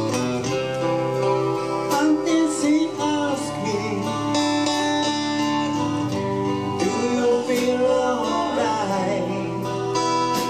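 Live acoustic band music: acoustic guitars strummed and picked under a male lead vocal, with light percussion and cymbal strokes keeping time.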